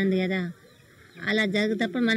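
A person speaking in short phrases, in a language the English transcript does not record, with a brief pause about half a second in.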